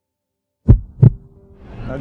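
A heartbeat sound effect: two deep, loud thumps about a third of a second apart, coming out of silence. Outdoor city background noise fades in after them.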